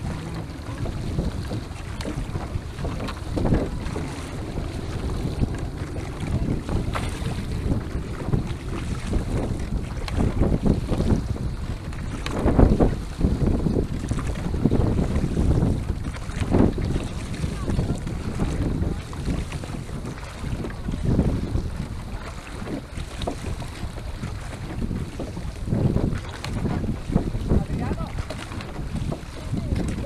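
Wind rushing over the microphone aboard a multi-oared Venetian rowing boat under way, with water washing along the hull and louder swells every few seconds as the oars stroke.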